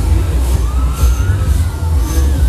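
Wind buffeting the microphone high on a fairground ride, a heavy, uneven low rumble. Faint wavering tones rise and fall over it.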